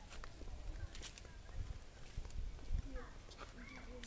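Soft handling noise as hands turn a finished paracord knot: low rumbles and a few light clicks, with faint voices in the background in the second half.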